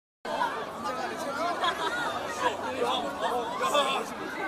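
Audience chatter: several voices talking over one another close by, with no music playing.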